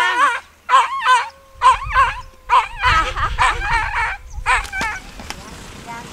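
A dog whining and yelping in a string of about six short, high, wavering cries that stop about five seconds in.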